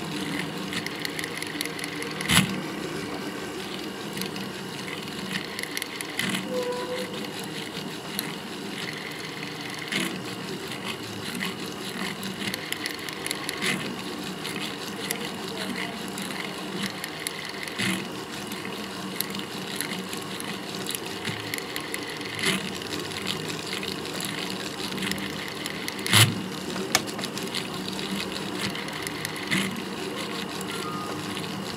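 Jeweler's motorised handpiece running steadily as its fine bit works the gold around pavé stone seats, with a few sharp metallic clicks spaced several seconds apart.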